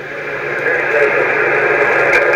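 Single-sideband receiver audio from a Yaesu FT-991A tuned to the 20-meter band: a hiss of band noise with a faint, broken voice of a distant station in it, gradually getting louder.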